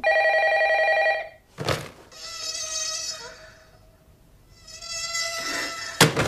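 Electronic telephone ringer buzzing in rings about a second long, the first loud and the next two fainter, with a sharp knock between the first and second ring and a sudden loud sound at the very end.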